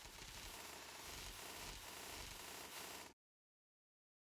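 Faint steady hiss, like static, that cuts off abruptly about three seconds in.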